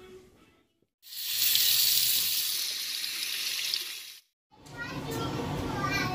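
A loud, steady rushing hiss like running water, lasting about three seconds and starting and stopping abruptly, followed by quieter voices.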